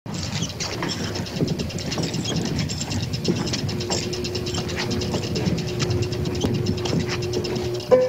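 Rapid, uneven clicking that runs without a break, with a faint steady hum coming in about halfway through.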